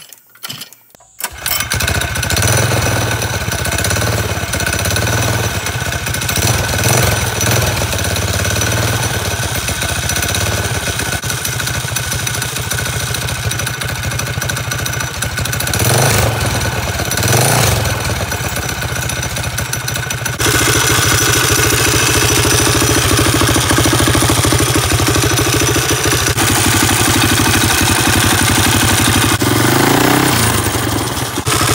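Predator 212 single-cylinder four-stroke engine on an ATV starting about a second in and then idling steadily, with two short revs about halfway through; the engine sounds louder from about two-thirds of the way in.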